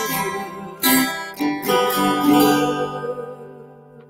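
Acoustic guitar strummed several times, then the last chord left to ring out and fade away: the closing chord of a song.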